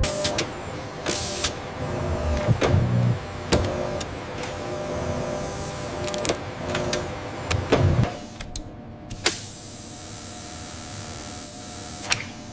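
Whirring of electric servo motors with sharp mechanical clicks, as of robotic arms and a tool head moving. From about nine seconds in, a steady hiss takes over.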